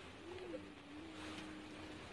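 A bird's faint, low coo: one long held note that rises and dips briefly at its start, then stays level.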